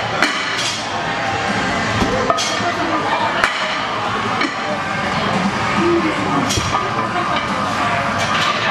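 Iron weight plates clinking and clanking against each other and the barbell as they are loaded onto a deadlift bar, with several sharp metal knocks, over background music and voices.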